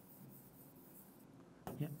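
Faint sound of a stylus writing on the glass screen of an interactive display board.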